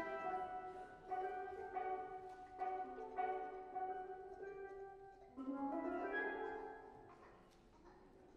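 A pair of steel pans played solo with mallets: a slow, free melody of struck, ringing notes, then a quick rising run about five seconds in that fades away near the end.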